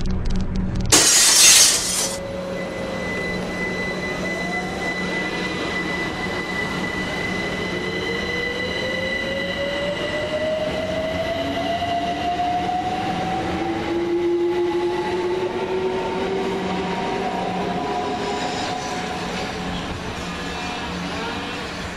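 London Overground Class 378 electric train pulling away from the platform, its traction motors whining and rising slowly in pitch as it accelerates, over a steady higher tone. A brief loud rush of noise comes about a second in.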